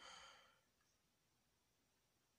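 A faint, short sigh, a breath let out in the first half second, then near silence.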